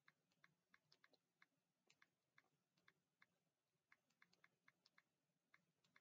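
Near silence with faint, irregular light clicks, a few a second.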